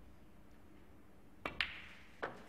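Snooker shot about a second and a half in: two sharp clicks in quick succession, the second louder, as the cue and the balls strike, over a faint hush.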